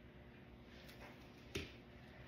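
Quiet room tone with one short, sharp click about one and a half seconds in, and a fainter tick just before it.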